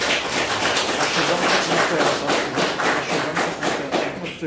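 Audience applauding: dense clapping from many hands that thins a little near the end.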